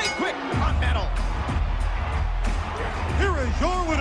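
A rap wrestling theme with a heavy bass beat and vocals kicks in about half a second in, over arena crowd noise. It is the winner's music, played right after the referee's pin count.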